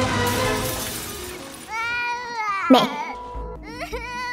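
A crash with glass shattering under dramatic film music, fading within the first second or so. Then a young boy wails and cries out "Mẹ" (Mom).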